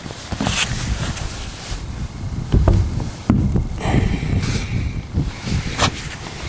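Low rumble of wind and handling on the microphone, with a few light knocks as the air compressor's removed cast-iron cylinder head is turned over in the hands.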